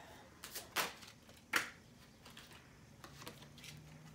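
A tarot deck being shuffled and handled: a few short card snaps and rustles in the first two seconds, fainter ones a little after the middle.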